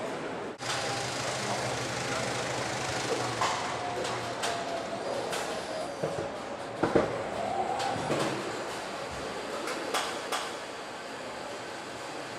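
Car assembly-hall ambience: a steady machinery hum with scattered clanks and knocks of tools and parts, the sharpest about seven seconds in.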